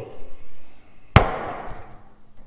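A single sharp knock about a second in, with a ringing tail, as a wooden board is set down on a truck's steel frame rail.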